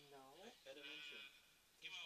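Speech only: a man says a drawn-out "no" with his pitch sliding, followed by quieter talk in the background.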